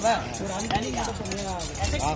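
Steel knife scraping and knocking against a fish and a wooden chopping block while the fish is descaled, with a louder knock near the start.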